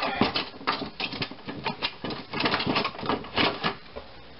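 Kitchen utensils clattering and clicking rapidly and irregularly as they are handled off-camera, as when rummaging for a scraper.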